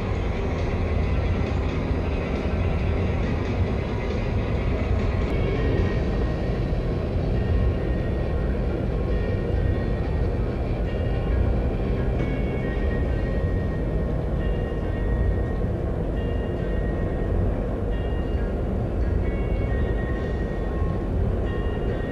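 Exhibition hall ambience: a steady, low hall noise with background music playing.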